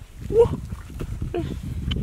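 A metal-tipped digging stick chopping and prying into wet clay mud with dull, irregular thuds. Two short vocal exclamations are heard, a loud one about half a second in and a weaker one about a second later.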